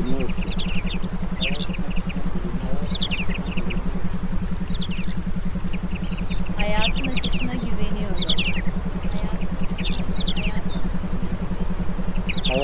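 Meditation background track: a steady, rapidly pulsing low hum with clusters of short, falling high chirps every second or two.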